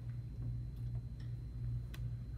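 A steady low hum in the room, pulsing evenly, with a few faint clicks and one sharper click just before the end.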